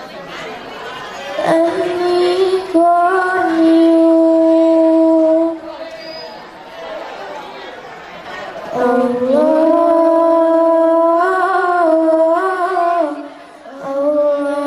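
Girls singing a hadroh devotional chant into microphones: two long phrases of held notes that bend slowly up and down, with a quieter lull between them about six to eight seconds in.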